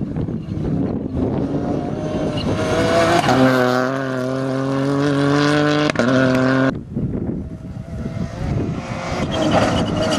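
Ford Fiesta rally car's engine running hard at high revs on a gravel stage. It holds a steady pitch with a brief break about six seconds in, drops off suddenly, then builds again as the car approaches near the end.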